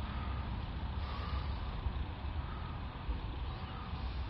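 Steady background noise, a low rumble with a faint even hiss, with no distinct handling knocks or clicks.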